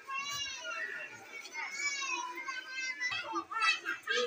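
Schoolchildren's voices, high-pitched talk and calling among a group of girls.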